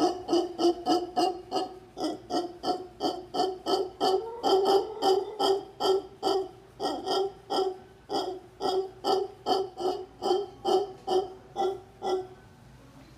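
Howler monkey calling in a rhythmic run of short pitched calls, about three a second, which stops just before the end.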